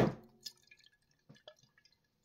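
Faint water moving inside a capped glass jar as it is twirled by hand, with a few soft drip-like plops and light taps, the clearest about half a second in and around a second and a half in.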